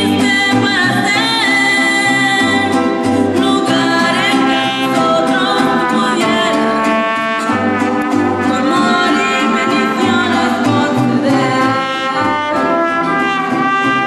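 A mariachi group performing a song: singing and brass over vihuela strumming and a plucked guitarrón bass line.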